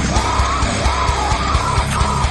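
Slam metal: rapid kick drums and heavy, low-tuned distorted guitars under a high line that wavers up and down about twice a second.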